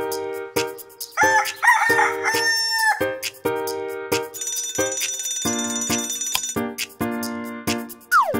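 Children's song backing music with an even, bouncy plucked beat. A cartoon rooster crows about a second in, and an alarm clock bell rings for about two seconds near the middle.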